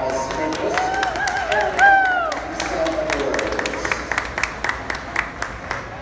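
Audience clapping in scattered, separate claps, with one person giving a long wavering whoop about a second in that ends in a falling glide.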